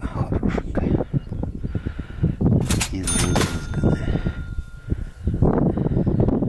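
A bright metallic ding, struck a few times about three seconds in, its ringing tone lingering for about two seconds. Under it, wind buffets the microphone with rumbling and handling rustle.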